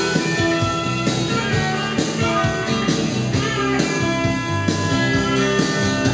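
Recorded 1980s rock song in an instrumental passage: guitars playing over a steady drum beat, with no singing.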